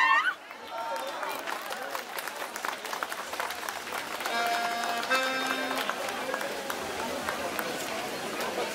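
Folk fiddle dance music cuts off right at the start, leaving the chatter of a standing crowd, with scattered faint clicks and two short held tones a little past the middle.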